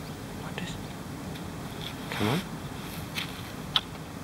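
A kangaroo biting at a slice of bread held out to it: two or three sharp clicks near the end. About two seconds in there is a short, low, falling voiced sound.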